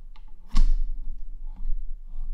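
A few light clicks, then one sharp, louder knock about half a second in, over a steady low electrical hum.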